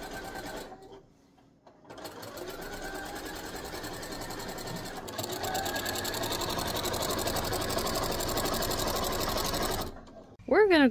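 Janome electric sewing machine stitching quilt binding, running at a fast, even stitch rhythm. It stops briefly about a second in, then starts again and runs on, a little louder in the second half.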